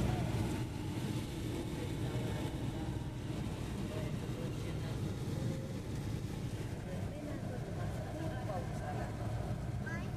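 Steady road noise heard inside a moving car's cabin: a low rumble from the engine and tyres, with the hiss of tyres on a wet road.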